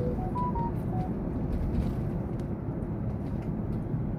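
Steady low road and engine rumble heard from inside a moving vehicle. A quick run of short tones sounds in the first second.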